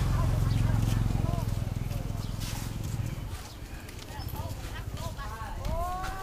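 Open-air market ambience: people's voices talking around, over a low engine rumble that is loudest at the start and fades out about three seconds in.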